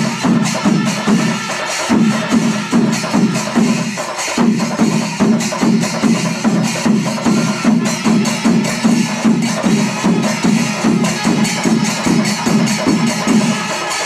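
Pandi melam: a large temple ensemble of chenda drums with ilathalam cymbals playing a loud, steady beat of about three strokes a second. The pulse breaks briefly about four seconds in.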